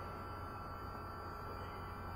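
Faint room tone: a low steady hum with light hiss and a few thin steady tones.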